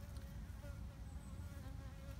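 A cold, near-dormant cluster of honeybees buzzing faintly: a low, wavering hum.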